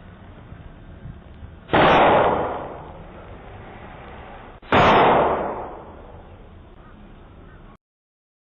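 Two gunshots about three seconds apart, each followed by a long echo dying away, picked up by a Ring doorbell camera's microphone.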